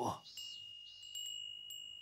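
A Japanese furin (glass wind bell) tinkling: several light strikes over a steady, high ringing tone. It is the traditional summer sound meant to make the heat feel cooler.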